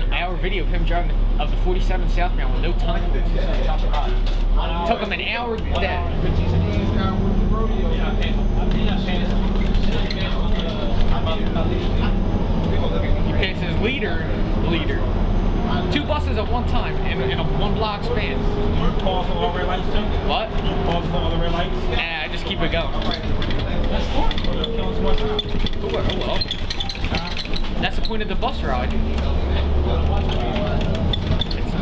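New Flyer D40LF city bus heard from inside while under way: its Cummins ISL diesel and Allison B400R automatic transmission running, the engine note stepping up and down several times. Indistinct voices run over it.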